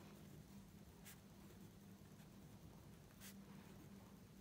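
Faint scratching of a pen writing on paper, with a couple of slightly louder strokes; otherwise near silence with a low steady hum.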